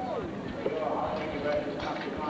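A speedway motorcycle's single-cylinder engine running at low revs with irregular popping as the bike slows after the race, under indistinct voices.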